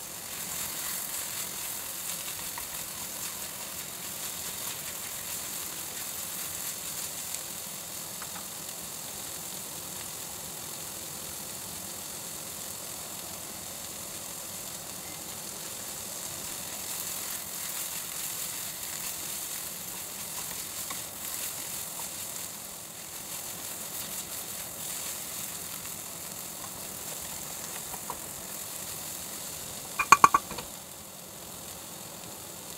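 Chopped bitter gourd stir-frying in a steel pan: a steady, even sizzle with a few faint clicks.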